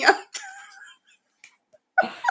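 A woman's voice trailing off into a soft, breathy laugh, then about a second of quiet. A short, sharp click comes at the very end.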